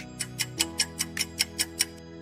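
Countdown timer sound effect ticking fast, about five ticks a second, over soft background music with held chords: the time to answer is running out.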